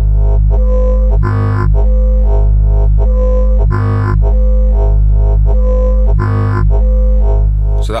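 Modular synthesizer oscillator (Erica Synths Black Varishape VCO) playing a low, sustained tone. A slowed-down Black LFO, shaped by its envelope, sweeps the wavetable, so the tone brightens in a swell about every two and a half seconds.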